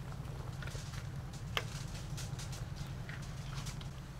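Soup bubbling at a rolling boil in an aluminium pot over a charcoal stove, with scattered small ticks and one sharper click about one and a half seconds in, over a steady low hum.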